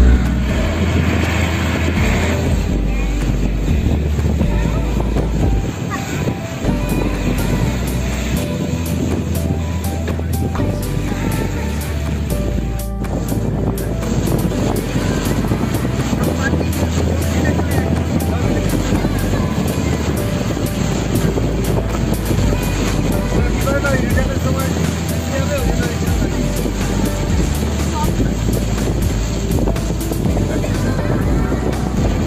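Road and engine noise inside a moving vehicle, a steady low rumble, with music and voices mixed in.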